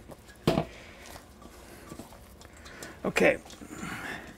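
Hand handling sticky bread dough in a stainless steel mixer bowl: faint small clicks and rustles, with one sharp knock about half a second in as the bowl is handled.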